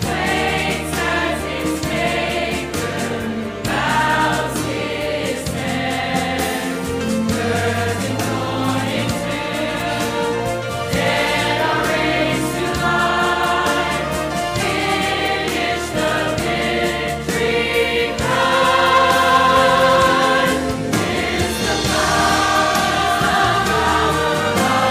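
Mixed church choir of men's and women's voices singing in parts, holding sustained notes that change every second or so.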